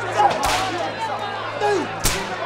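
A whip cracks once, sharply, about half a second in, over the cries and shouts of a crowd.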